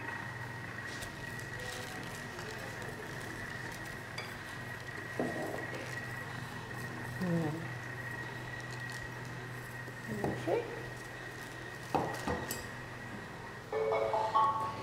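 Quiet kitchen handling: dough being rolled out with a rolling pin between plastic sheets, with a few soft knocks, clicks and rustles of utensils on the worktop over a steady low hum.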